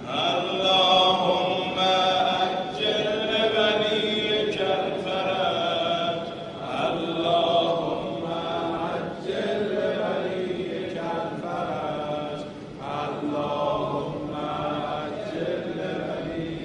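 A religious chant in Arabic, voices intoning repeated phrases a few seconds long with short breaks between them.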